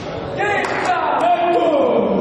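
Players' voices shouting together, starting about half a second in, echoing around a large sports hall, with a few sharp taps.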